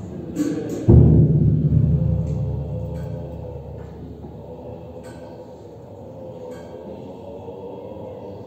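Buddhist monks' low ritual chanting drone, with a single heavy percussion strike about a second in that rings on and fades over a few seconds in the large hall.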